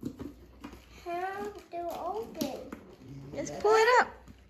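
Mostly a young child's wordless vocalising in a small room, in short bursts, with a few light knocks and clicks from a cardboard shoebox being handled.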